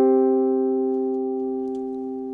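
A perfect fifth (the root and its fifth) played together on a hollow-body archtop electric guitar, ringing out and fading slowly. It is a stable, open-sounding interval, "super stable, like a pillar."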